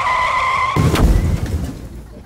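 Comic car-crash sound effect: a steady tyre screech cut off a little under a second in by a heavy crash thump that fades away over the next second.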